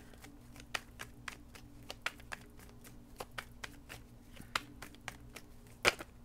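A deck of tarot cards being shuffled by hand: a run of light, irregular card clicks and flicks, with one sharper snap near the end, over a faint steady hum.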